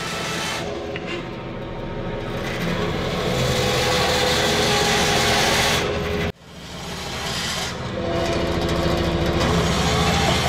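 Bandsaw running and cutting through a block of red cedar, a steady whir of the motor and blade under the hiss of the cut. The sound breaks off sharply a little past the middle and builds back up.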